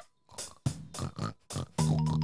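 A cartoon pig oinking in a string of short, separate oinks. Near the end, a few bright musical notes come in.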